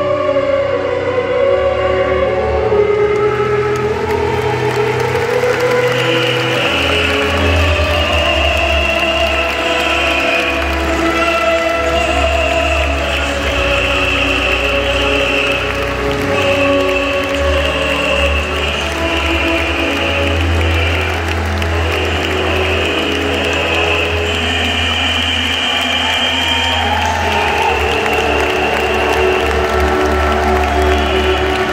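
Music played over a stadium public-address system, with long held notes and a steady bass line that comes in about seven seconds in.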